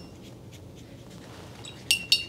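Quiet room tone, then near the end a sharp ringing clink as a paintbrush is tapped against the rim of a glass water jar.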